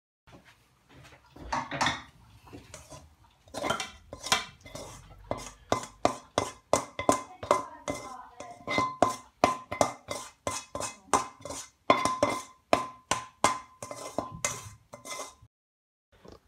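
Spatula scraping and knocking against a steel wok as stir-fried noodles are scraped out onto a plate. The clinks come in a rapid series, about three a second, over a steady metallic ring from the pan.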